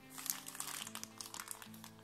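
Clear plastic bag crinkling as a bagged set of rubber RC-car tyres is picked up and handled, with irregular crackles that die down after about a second and a half, over steady background music.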